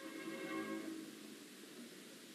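Orchestral opera music: a held chord that fades away after about a second, leaving a faint hiss.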